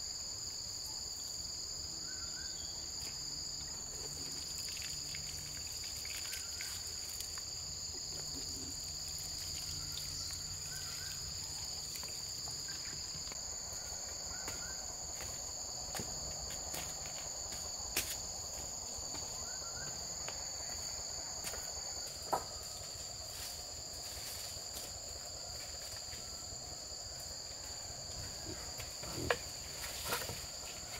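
Steady insect chorus from the forest: a continuous high-pitched buzzing at two even pitches, with a few sharp knocks at intervals, the loudest near the end.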